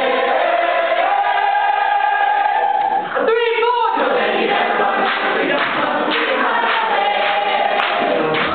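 Stage-musical cast singing a gospel-style number together, holding sustained chords. About three seconds in, one voice briefly wavers up and down in pitch before the group carries on.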